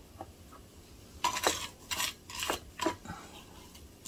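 Gravelly potting mix crunching and clinking in short strokes, about four or five from a second in, as grit is handled around a newly potted plant.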